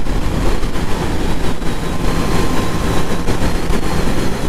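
Yamaha XJ6's inline-four engine running steadily while the motorcycle rides along at road speed, mixed with heavy rushing wind noise on the microphone.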